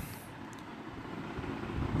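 Steady low background noise with no distinct event: the room or recording noise under a spoken narration, heard in a pause between phrases.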